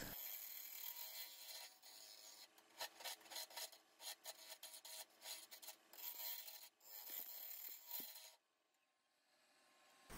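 Faint hiss and scrape of a bowl gouge cutting the inside of a spinning maple bowl on a wood lathe, coming in uneven bursts, then cutting out to silence near the end.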